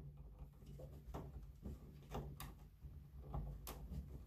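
A split EPS CPU power cable's plastic four-pin connector being worked into the motherboard's CPU power header: a handful of faint, sharp clicks and scrapes as it is pushed and seated, over a faint low hum.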